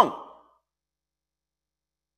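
A man's spoken word trails off within the first half second, then dead silence: a pause in his speech.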